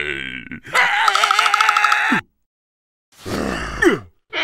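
A cartoon creature's wordless voice grunting and groaning. About a second in it gives a long wavering, trilling cry, then falls silent for a moment, and near the end it makes a shorter groan that slides down in pitch.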